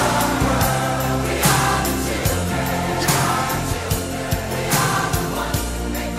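Large choir singing a chorus over a pop band with a steady drumbeat and sustained bass.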